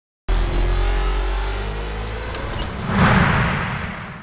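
Sound-designed logo sting: a deep rumble starts suddenly with a slowly rising tone over it, swelling into a whoosh about three seconds in, then fading out.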